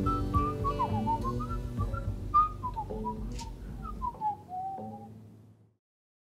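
A man whistling a melody through pursed lips into a microphone, over guitar accompaniment, as the song ends. It fades out steadily and stops a little before the end.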